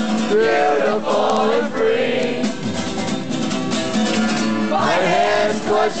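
Live folk-punk song: strummed guitar under loud singing, with two sung phrases of long, bending notes.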